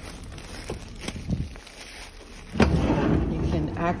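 A metal side door on a box-truck cargo body being unlocked and opened: a few faint clicks from the key and latch, then about two and a half seconds in a loud rumbling rush lasting about a second as the door is pulled open.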